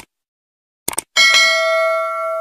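Short mouse-click sound effects as the on-screen subscribe button and then the notification bell are clicked. About a second in, a bright bell chime rings out and holds on steadily.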